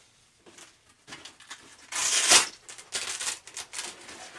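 Handling noises: rustling, crinkling and light knocks while rummaging for and lifting out an Avon S10 rubber gas mask. The handling starts after a quiet first second, and there is a loud rustle about two seconds in.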